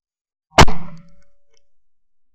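A single 12-bore shotgun shot from a side-by-side hammer gun: one very loud, sharp report about half a second in, dying away over about half a second, with a faint ringing tone trailing after it.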